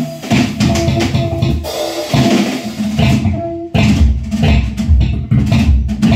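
Free-improvised music: electric bass playing short, broken plucked notes over loose drum-kit playing with kick drum.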